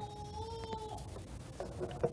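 A single drawn-out, steady high-pitched squeal or call, faint, that stops about a second in, followed by a few faint clicks and rustles near the end.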